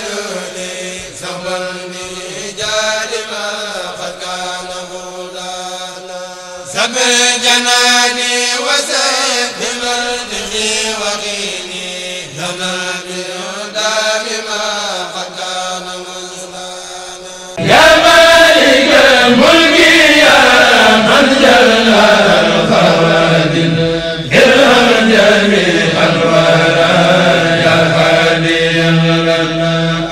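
A Mouride kourel, a group of men, chanting Arabic devotional verse together through microphones, in long held notes that glide up and down. Just past halfway it switches suddenly to a louder, fuller passage.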